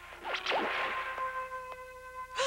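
Soundtrack sound effect: a sudden swishing whoosh that swells up in the first half-second with quick swooping sweeps. A held, ringing chord of high tones comes in about a second in. Faint footstep taps sound under it.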